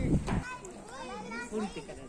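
Young children's voices calling and chattering over one another while playing on playground equipment. A low rumble in the first half-second cuts off abruptly.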